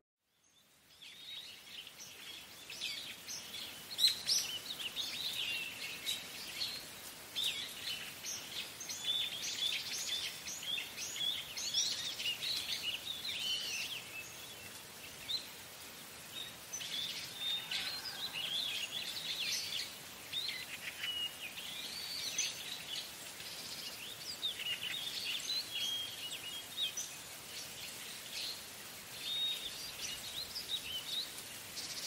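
Birds chirping: many short, high calls overlapping continuously, starting about a second in.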